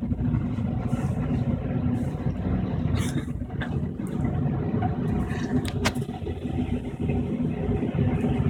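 Magnetic stir plate spinning at high speed under a 6061 aluminium heating block, a steady low rumbling hum; the spinning magnet induces eddy currents that push the block up off the plate. A few short clicks about three and six seconds in.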